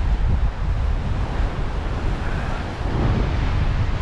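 Wind blowing over the microphone in a gusting low rumble, over the wash of sea surf breaking against rocks.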